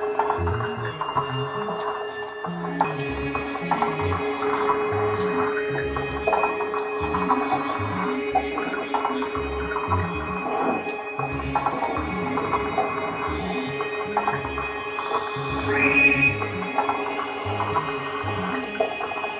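Live electronic music from a modular synthesizer: a held drone joined about three seconds in by a higher steady tone, over irregular low pulses and scattered clicks. A brighter high tone swells near the end.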